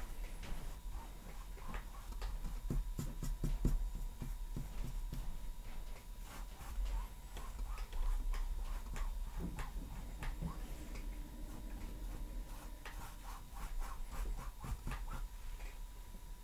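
Paintbrush scrubbing acrylic paint onto a stretched canvas, in runs of quick, scratchy strokes. A faint steady tone sits underneath.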